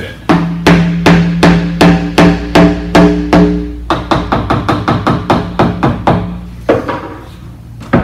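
Mallet tapping stoppers into large square wooden organ pipes to seat them with a snug fit. The first nine or so even blows come about two and a half a second, each with a hollow, pitched ring. About four seconds in they turn lighter and quicker, at a lower pitch, and fade out a little before one last hard tap at the end.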